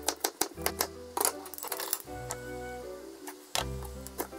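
Kitchen knife chopping green pepper on a mango-wood cutting board: quick, even taps of the blade on the board, pausing in the middle and starting again near the end, over background music.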